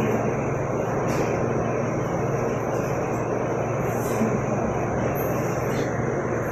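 A steady, unbroken mechanical drone: a rushing noise with a low hum underneath, holding an even level throughout.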